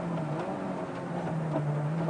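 Renault 5 Turbo rally car's mid-engined turbocharged four-cylinder running at speed on a dirt road, a steady low engine note that dips slightly past the middle and picks up again, over road and tyre noise.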